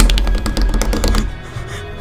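A train rushing past in a film soundtrack, over music. It comes in suddenly and loud with rapid clattering and a deep rumble, then drops away after just over a second.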